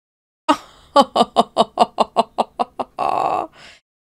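A woman laughing in a run of about ten short, quick pulses, about five a second, ending in a breathy intake of air.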